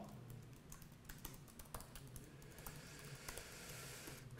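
Faint, irregular keystrokes on a laptop keyboard as code is typed.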